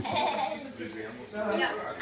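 Young children's voices at a table: unworded chatter and vocal sounds rather than clear words.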